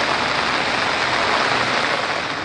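Rain falling steadily on floodwater, an even, constant hiss.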